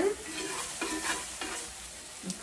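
Small pieces of chicken breast sizzling in a very hot skillet while metal tongs stir and lift the browned, finished pieces out of the pan.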